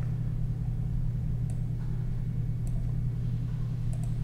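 A steady low hum of background noise, with a few faint, sharp clicks of a computer mouse spread across it.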